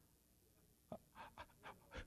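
Faint, breathy laughter: a few short pulses starting about a second in, just after a soft click.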